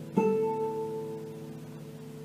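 Solo nylon-string classical guitar, fingerpicked: a chord is plucked about a fifth of a second in and left to ring and slowly fade.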